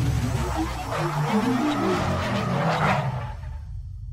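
Intro sting for a logo animation: music with a run of short pitched notes over a low rumble, building to a rushing swell about three seconds in, then fading out near the end.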